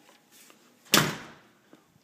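A door shutting once with a sharp bang about a second in, followed by a short echoing decay.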